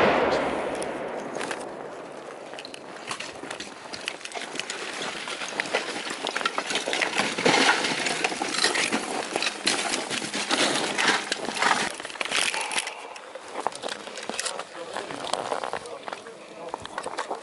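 The fading boom of an explosive breaching charge set off against a cinder-block wall, dying away over about two seconds. It is followed by a long run of clattering and clinking as brick debris and gear are disturbed, with raised voices, busiest in the middle of the stretch.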